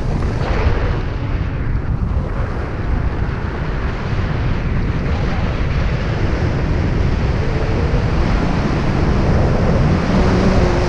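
Wind buffeting the camera microphone during a tandem paragliding flight: a steady, loud rush, heaviest in the low end.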